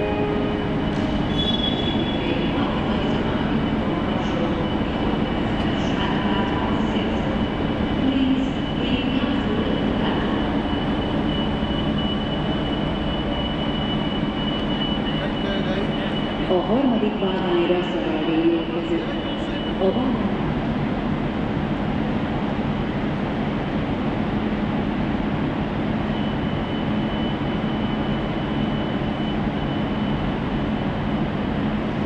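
Ex-ČD class 750 'Goggle' diesel locomotive idling at a standstill: a steady engine drone with a thin high whine over it. A few wavering tones and a slight swell come about halfway through.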